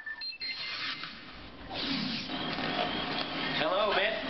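Television broadcast audio heard off a TV set: a short ringing chime right at the start, then indistinct voices and studio sound that grow louder about two seconds in.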